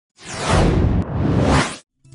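Whoosh sound effect of a TV news channel's animated logo ident: two swooshes back to back, the first falling in pitch and the second rising, with a brief dip between them. It cuts off suddenly near the end.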